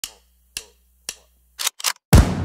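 Percussive hits opening an electronic hip-hop intro track: three sharp clicks about half a second apart, each ringing briefly, then two quicker, louder hits near the end before a short drop-out.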